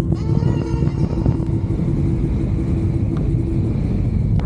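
Wind rumbling steadily on the camera microphone during a speed-riding flight, a low rumble with no pitch.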